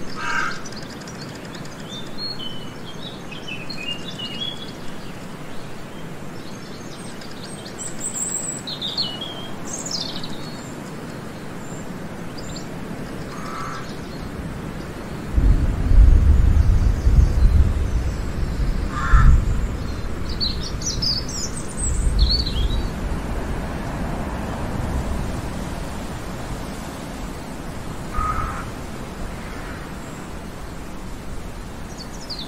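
Forest ambience: an even rustling hiss, with small birds chirping and trilling in several short bursts and a few short, lower calls. About halfway through, a loud low rumble comes in for several seconds and then fades.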